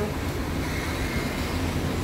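Wind buffeting a phone microphone outdoors: a steady low rumble with no speech.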